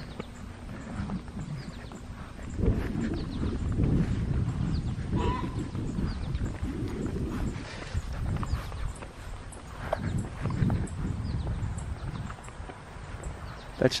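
Footsteps walking through grass: irregular soft thuds and rustling, starting a few seconds in.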